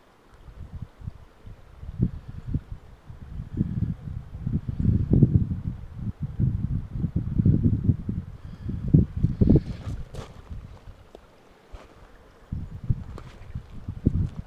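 Wind buffeting the microphone: an irregular low rumble that swells and fades in gusts, strongest in the middle and easing off for a moment shortly before the end.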